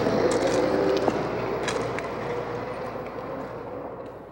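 Outdoor city street ambience, a wash of traffic-like noise with a faint steady tone and a few clicks, fading out gradually.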